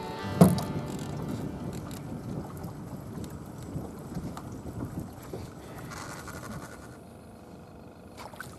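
Water lapping against the hull of a small aluminium fishing boat, with wind on the microphone. A single sharp knock about half a second in is the loudest sound.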